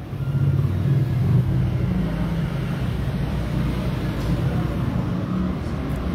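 Steady low rumble of a motor vehicle's engine running close by, with street traffic noise.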